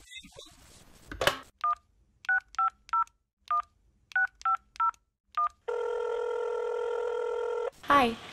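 Telephone sound effect: a short knock, then a number dialed on touch-tone keys as about nine quick two-tone beeps. The line then rings once, a steady tone for about two seconds.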